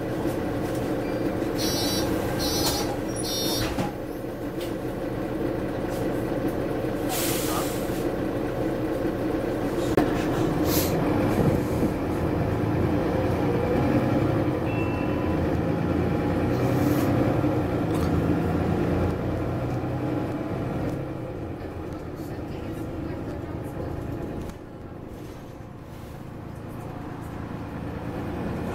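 A Mercedes-Benz Citaro bus heard from inside the saloon, its diesel engine and drivetrain running as the bus pulls away and gathers speed. There are three short beeps about two to four seconds in, then a few brief air hisses. The engine eases off and goes quieter near the end.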